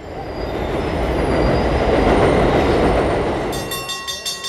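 Elevated subway train passing overhead on steel trestle tracks: a heavy rumble that swells to a peak midway and then eases off. A high, steady wheel squeal sets in near the end.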